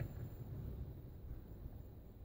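Faint room tone of an indoor hall, a low steady rumble and hiss, as a gathering stands in a minute's silence.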